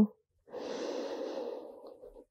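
A woman taking one deep, audible breath in, lasting about a second and a half and starting about half a second in.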